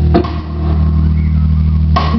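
Live rock trio playing: a drum accent just after the start, then a low bass note and electric guitar chord held ringing, with another accent at the end.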